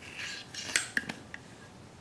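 Light metallic clicks and handling rustle from the machined-aluminium frame parts of an RC helicopter kit being turned over in the hands. There is a brief rustle at the start, then a few sharp small clicks of metal on metal.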